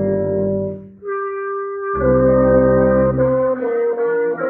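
Brass sextet of trumpets and other brass playing: a held chord dies away, a single instrument holds one note alone, and the whole ensemble comes back in with a full chord about two seconds in, moving to new notes near the end.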